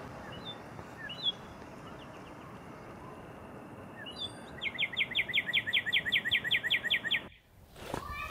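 Outdoor garden ambience with a steady soft hiss and a few scattered bird chirps. Past the middle, a songbird sings a fast series of about fifteen repeated down-slurred notes, roughly six a second, for about two and a half seconds.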